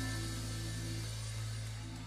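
Lull between songs: a steady low electrical hum from the stage sound system, with faint short held notes from the band's instruments.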